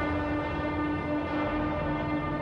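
Background score music: a steady held chord of sustained tones with no beat.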